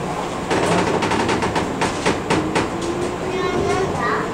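Interior of a JR 201 series electric commuter train pulling away: a run of sharp clacks as the wheels pass over rail joints and points, then the chopper-controlled traction motors whining, rising steadily in pitch as the train accelerates.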